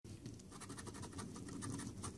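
A coin scraping the scratch-off coating from a paper lottery ticket, in rapid, faint strokes.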